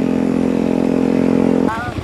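Motorcycle engine running at a steady speed, one even hum that cuts off abruptly near the end. It gives way to the rapid pulsing of a motorcycle engine running nearby.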